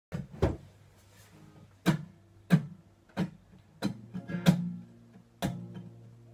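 Steel-string acoustic guitar playing slow, spaced-out strummed chords, about eight strokes, each left to ring before the next.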